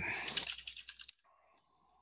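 Typing on a computer keyboard: a quick run of key clicks that cuts off suddenly about a second in.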